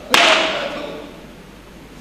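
A single sharp slapstick crack of a black strap striking an actor, about a tenth of a second in, fading away over about a second.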